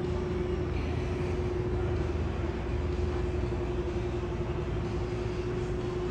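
Steady indoor room hum: even ventilation noise with a low rumble and one constant humming tone, with no other events.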